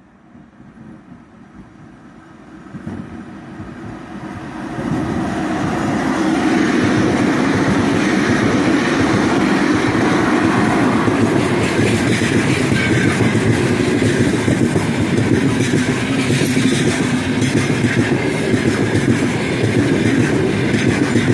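A 3ES5K "Ermak" electric locomotive hauling a heavy freight train approaches and passes close by, growing steadily louder over the first five or six seconds. The loaded freight wagons then roll past with a loud, steady noise of wheels running on the rails.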